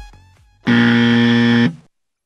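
A loud electronic buzzer sounds once, a steady warning tone lasting about a second, used as an alert sound effect. Before it, dance music fades out in the first half-second.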